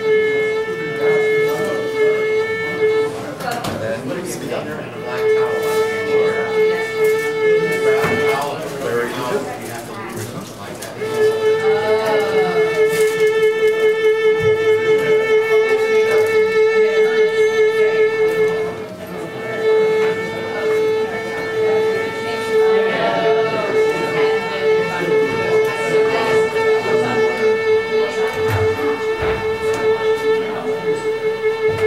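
Violin playing one bowed note held long on the same pitch, again and again, with an even vibrato pulsing through each hold, as a left-hand vibrato practice exercise. The holds last a few seconds each, the longest about eight seconds in the middle, with short breaks between.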